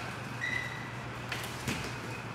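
Light slaps and shuffling of two people hand-fighting on a training mat: a couple of soft sharp hits late on, and a short high squeak about half a second in, over a steady low hum.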